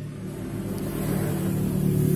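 A motor vehicle's engine running with a steady low hum, growing gradually louder.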